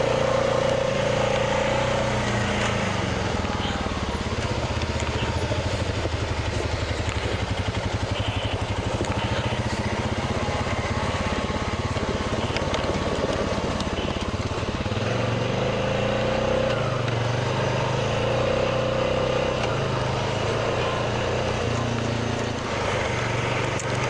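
A 2021 Honda Rubicon 520 ATV's single-cylinder engine running steadily under way, its pitch drifting a little as road speed changes, with wind and tyre noise over it. A higher steady whine comes through in the first couple of seconds and again about 15 to 20 seconds in.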